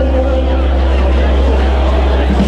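A live dance band's low note held steady, with the chatter of the dancing crowd over it.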